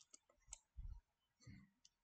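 Near silence with a few faint, short clicks and two soft low thumps.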